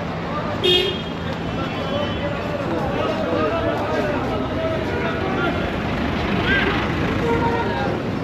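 Busy city street: crowd chatter over passing car traffic, with a short horn toot about a second in.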